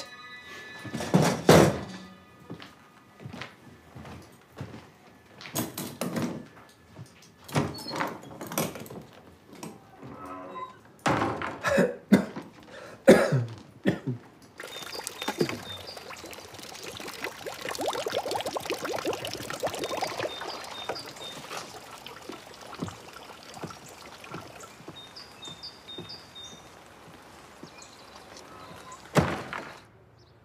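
A string of heavy, irregular thuds of blows being struck, about a dozen over the first fourteen seconds. Then steady rain falls, with water dripping from a gutter, and a single loud thump comes near the end.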